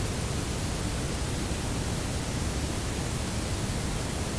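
Steady hiss with a low rumble underneath, even and unchanging, with no other event: the background noise bed that also runs under the narration.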